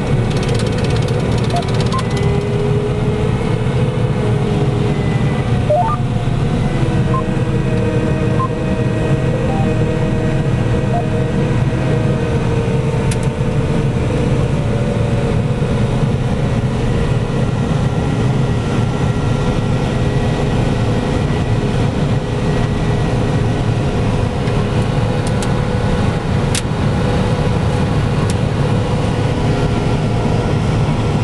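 A modern 425 hp combine harvester running steadily while harvesting soybeans, heard from inside its cab: a constant low drone with a few faint steady whining tones above it.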